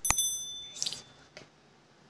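Subscribe-button animation sound effect: a mouse click, then a bright bell ding that rings out and fades within about a second.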